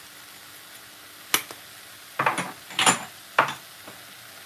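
Small plastic spice jar of dried chili shaken over a cooking pot: a sharp click, then a couple of short rattling shakes, and another click near the end.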